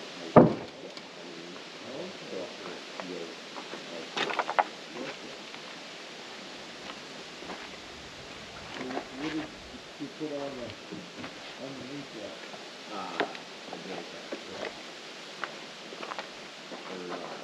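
Conversation in the background, with a sharp knock about half a second in and a quick run of clacks a little after four seconds.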